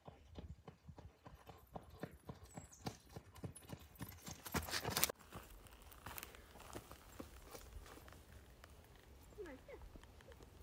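Footsteps running on a packed dirt trail, quick and regular at about three a second, with a louder rush of noise about five seconds in.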